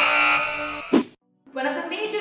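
Game-show style 'wrong answer' buzzer sound effect, a harsh buzz lasting just under a second that ends in a short loud hit.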